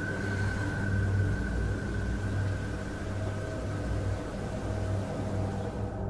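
A steady low droning hum with a thin, steady high tone above it that fades about halfway through.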